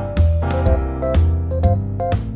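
Background music: keyboard chords over a strong bass line, with a steady beat of about two note changes a second.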